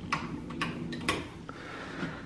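A few light, irregular clicks and taps, about five in two seconds, over a faint low hum.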